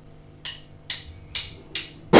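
A drummer's count-in: four short, evenly spaced clicks a little under half a second apart.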